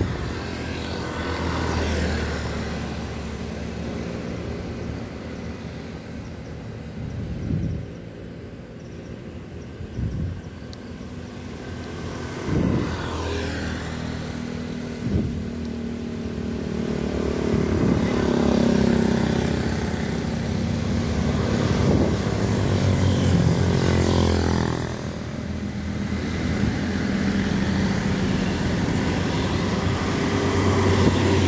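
Motorcycles and a few cars passing one after another along a road, each engine's sound swelling and fading as it goes by. The traffic is heavier in the second half, with several engines overlapping.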